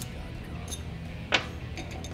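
A single sharp metallic click as a steel pin punch is set against the plunger in the aluminum cam plate's relief-valve bore, with a couple of fainter ticks around it.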